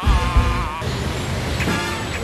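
A movie soundtrack playing a car engine running under music, after a short laugh at the start.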